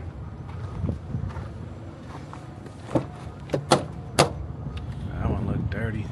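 A Peterbilt truck's cab door being unlatched and opened: four sharp metallic clicks and knocks of the handle and latch, about three to four seconds in, over a low rumble.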